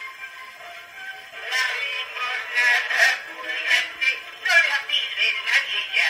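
Portable wind-up gramophone playing a worn Columbia shellac 78 of a zarzuela duet: male voices singing with orchestra, thin and without bass, the words blurred into a murmur by the record's wear. The singing gets louder about a second and a half in.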